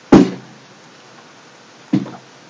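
A single sharp, loud thump right at the start, dying away quickly, and a second, softer one near the end.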